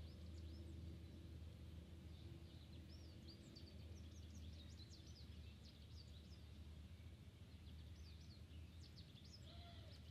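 Near silence with faint songbirds: many short, high chirps and whistles scattered throughout, over a low steady hum.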